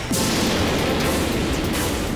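Anime sound effect of a sudden, loud rush of energy noise that starts at once and slowly fades as laser armour is fitted onto an insect monster, with background music under it.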